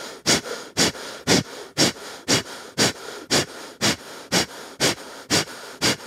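A person breathing hard and rhythmically as recovery breathing after exercise: about two short, forceful exhalations a second, evenly paced, with softer inhalations between them.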